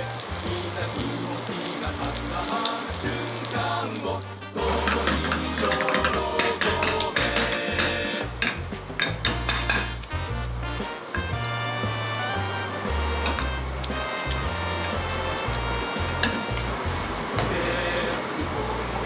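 Sizzling of food frying in a pan on a gas burner, first tomato-red chicken rice and then the omelette egg, with clinks and knocks of the pan and utensils, densest in the middle. Background music with a steady bass line plays throughout.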